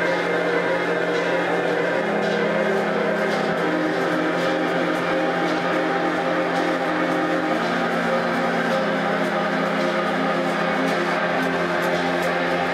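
Live band music with an electric keyboard playing sustained chords that shift every couple of seconds, over a light, steady ticking rhythm.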